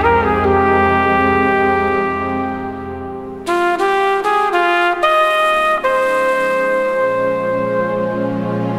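Solo trumpet playing a slow jazz ballad line. It holds a long note that slowly fades, plays a quick run of short notes a little past halfway, then settles on a long, lower held note, over a soft sustained backing.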